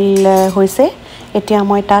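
A person's voice in drawn-out notes held at a steady pitch, like singing or humming, with a few light metallic clinks of kitchen utensils.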